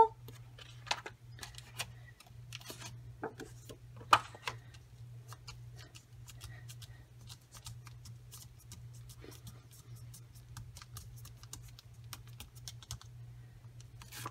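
Hands handling paper card stock and pressing it onto shaving cream on a craft mat: scattered light taps, clicks and rustles, with one sharper tap about four seconds in, over a steady low hum.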